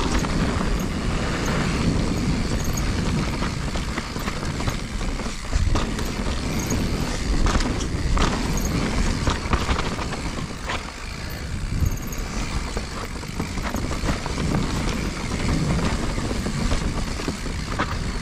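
A 2021 Giant Reign Advanced Pro 29 mountain bike rolling down a dirt singletrack, heard up close from a chest-mounted camera: a steady rush of tyres on dirt with frequent small knocks and rattles from the bike over roots and rocks.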